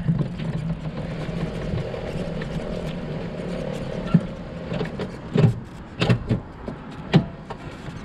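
Golf cart running with a steady hum that dies away about halfway through, followed by several sharp thumps and knocks.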